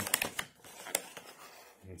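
Clear plastic clamshell sandwich containers clicking and crackling as they are handled: a cluster of sharp clicks in the first half second, another about a second in.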